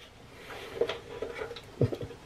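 Faint light clicks and rustles of a hand handling a stainless pop-up toaster while its browning setting is being chosen, with a brief low vocal murmur near the end.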